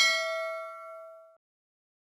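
Notification-bell ding of a subscribe-button animation: a single bright bell strike ringing in several steady tones. It fades and then cuts off suddenly about a second and a half in.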